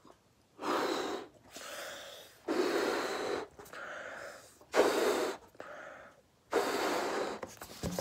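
A latex balloon being blown up by mouth: four long, loud puffs of breath into it, each followed by a quieter breath in.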